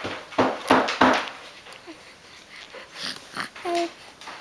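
A three-month-old baby making breathy, spitty bubble noises: a few quick sputtering bursts in the first second, then two short soft coos near the end.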